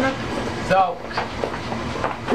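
Indistinct voices mixed with several short knocks and clatter.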